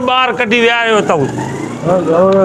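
A man speaking loudly and animatedly for about a second, then a short lull with a faint rising engine-like whine behind it.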